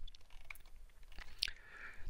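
Low room tone with a faint hum, broken by a few soft clicks, and a short intake of breath in the last half second before speech resumes.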